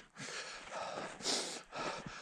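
A man breathing hard close to the microphone, a few heavy breaths in and out.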